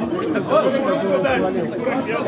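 Overlapping voices: several people talking at once.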